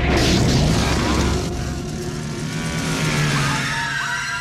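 Chainsaw engine running and revving, its pitch rising and falling, mixed into a horror-trailer soundtrack with music. A deep rumble sits under the first two seconds and then drops away.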